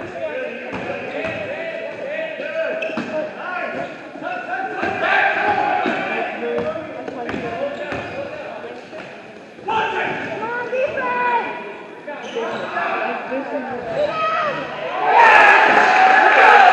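A basketball is dribbled on a gym floor, with players and spectators shouting and calling out around it in the echoing hall. About a second before the end the voices swell into a louder cheer as a three-pointer goes in.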